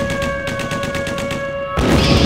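Intro of a black/thrash metal song: a fast, evenly spaced rattle like machine-gun fire, with a slowly falling whistle over steady droning tones. Near the end the distorted guitars and drums crash in all at once.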